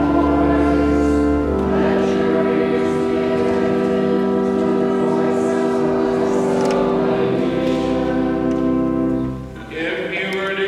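Church music for a sung responsive psalm: long held chords that change about a second and a half in and again near the end, with a short dip in level just before the end.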